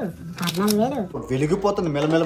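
A man counting aloud in a repeated sing-song phrase while flicking through a stack of paper banknotes, the notes rustling as each is thumbed past.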